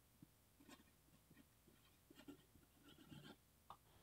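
Near silence, with a few faint scratches of a pencil writing on paper.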